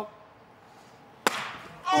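A single full-power open-hand slap to the face, a sharp crack about a second and a quarter in, after a near-quiet wind-up; a huge blow.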